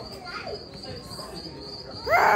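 Steady high-pitched trilling of insects, like a chorus of crickets, with faint voices in the background.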